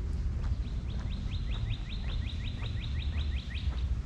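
A songbird singing a rapid run of short rising whistled notes, about six a second, starting just under a second in and stopping shortly before the end.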